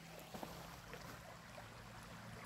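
Faint sound of a small, shallow stream running over gravel, with a low steady hum underneath.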